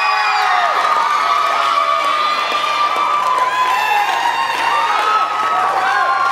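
Audience cheering and screaming, with several long high-pitched screams held at once over the noise of the crowd.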